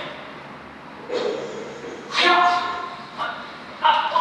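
A man's voice in a few short utterances with pauses between.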